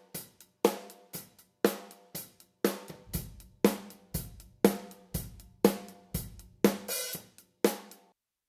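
Drum kit heard solo through a pair of ribbon overhead microphones (SE Electronics Voodoo VR1), high-pass filtered so the low end is thin: snare and cymbal hits in a steady beat of about two a second. Playback stops suddenly at the very end.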